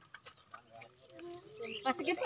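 Faint voices talking quietly, a little louder in the second half.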